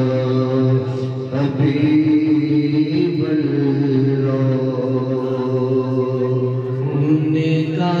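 Men singing an Urdu naat into microphones in a slow chant, holding long notes that shift pitch every few seconds over a steady low drone.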